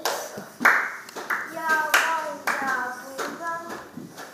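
Hand claps in a steady beat, about six of them roughly two-thirds of a second apart, with high-pitched voices speaking or chanting between the claps.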